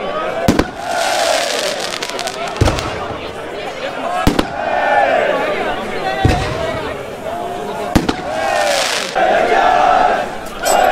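Firecrackers or bangers going off one at a time, about six sharp bangs a second or two apart, over a crowd of football supporters chanting.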